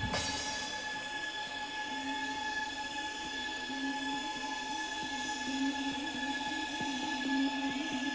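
Electronic dance music from a DJ's vinyl set in a beatless stretch. The kick drum stops right at the start, under a hiss that fades over about two seconds, leaving steady high synth tones over a pulsing low note.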